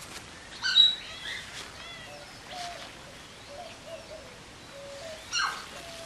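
Outdoor birdsong: a string of short low notes and a few small rising chirps, cut through by two short, sharp, high-pitched calls, the loudest sounds, about a second in and again near the end.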